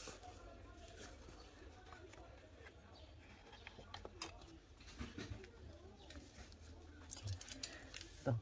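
Faint, distant cries and babble of a small child in the background, with a few small clicks of a binder clip being fastened onto paper.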